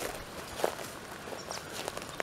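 A few light footsteps on dry ground and leaf litter, spaced irregularly.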